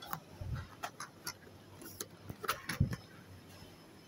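Scattered light clicks and knocks with two dull thumps, about half a second and just under three seconds in, from boxed curtains being handled in plastic store-shelf bins.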